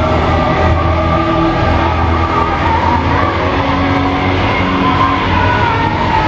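Loud rock or heavy metal music with sustained, droning chords over a heavy low bass, steady throughout.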